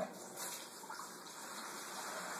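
Saltwater from a small reef aquarium running out through a siphon hose into a container: a steady, quiet flow of water.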